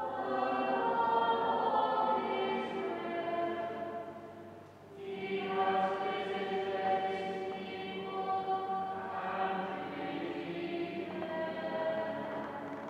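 Choir singing sustained notes; one phrase fades out about four seconds in and a new phrase begins about a second later.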